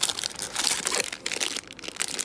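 Plastic snack wrappers crinkling as a hand rummages through them in a packed bag pocket, with dense irregular crackling that thins out near the end.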